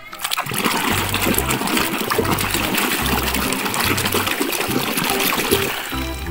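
Water splashing and sloshing continuously as hands scrub a muddy plastic toy in a shallow paddling pool, with a steady crackle of small splashes.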